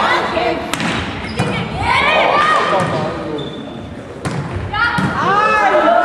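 Volleyball being hit during a rally in a sports hall: three sharp smacks of hands on the ball, with players' shouts rising and falling between them, twice.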